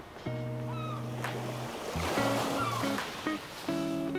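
Ocean surf washing in, a wave swelling and breaking about halfway through, with short gull cries over acoustic guitar music.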